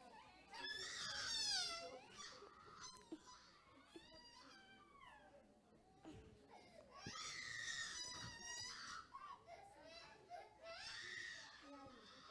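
A young child crying faintly, in several high, wavering cries of about a second each with short pauses between.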